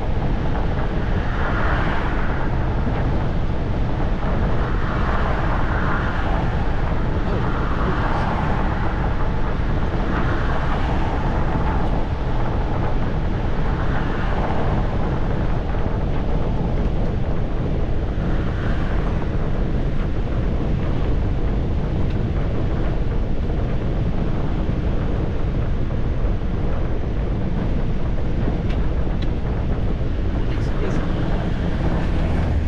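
Steady road and wind noise heard inside a vehicle cab cruising at motorway speed, with a deep, even rumble underneath.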